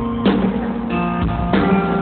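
A live rock band playing an instrumental passage between vocal lines, with guitar and drum kit. The chords change about a quarter second in and again about a second and a half in.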